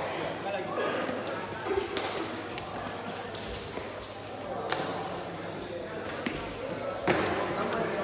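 Indistinct chatter of players and onlookers in a large gym hall, broken by a few sharp thuds, the loudest one about seven seconds in.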